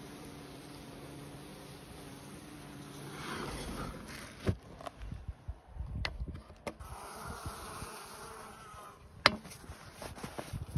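A honeybee colony buzzing steadily in an opened hive, the hum fading after about three seconds. A few sharp knocks follow as the hive and its plastic pail feeders are handled, the loudest near the end.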